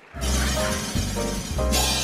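A short music sting for a countdown graphic, starting abruptly with a crash-like hit over deep bass notes, with a second burst of hiss near the end.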